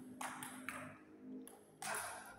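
Table tennis ball clicking against table or bat, a few separate sharp hits that echo briefly in a large hall.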